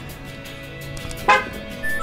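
A short car horn chirp about a second in, as a key fob is pressed, over background music. A brief beep follows near the end.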